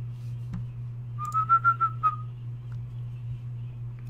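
A person whistling briefly: a short run of high notes lasting about a second, over a steady low hum.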